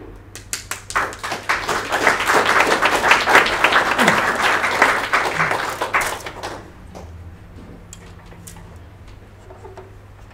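Audience applauding, swelling to a peak about three seconds in and dying away after about six seconds, leaving a quiet room with a steady low hum.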